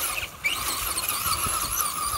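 Traxxas Rustler electric RC truck driving over grass, its motor and drivetrain giving a high-pitched whine that wavers in pitch with the throttle. The whine drops out briefly about a third of a second in, then picks up again.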